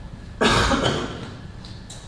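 A man coughing once, a sudden loud cough about half a second in that fades within about half a second.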